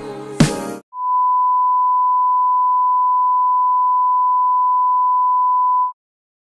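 A music track cuts off in the first second, then an electronic test-tone beep, one steady pure pitch, holds for about five seconds and stops abruptly just before the end.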